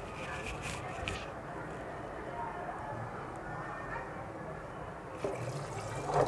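Hot mutton broth bubbling steadily in an open aluminium pressure cooker. Near the end, soaked rice is tipped in with a wet, slushy pour.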